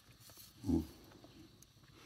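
A man's short closed-mouth 'mm' of enjoyment, one hummed grunt about two-thirds of a second in, as he tastes the food.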